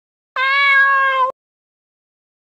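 A domestic cat's single meow, about a second long, held at one steady pitch and starting and stopping abruptly.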